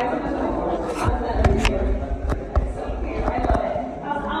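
Voices of several people talking in a reverberant stone room, with a few sharp knocks and low thumps partway through.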